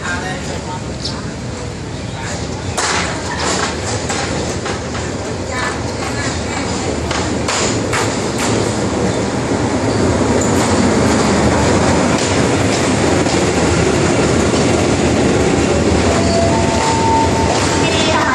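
Hitachi-built diesel-electric locomotive (SRT HID class) hauling a passenger train into a station, its engine and running noise growing steadily louder as it nears. Scattered clicks come in the first half. After the locomotive draws level, the coaches roll past with a steady loud rumble, and a brief high squeal sounds near the end.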